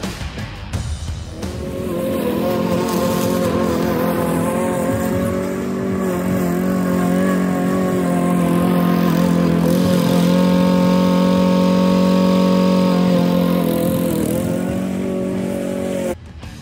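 Gasoline push lawn mower engine running at a steady speed, with a brief sag in pitch near the end.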